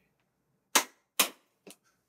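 Two sharp cracks about half a second apart, the loudest sounds here, each dying away quickly, followed by a faint tick.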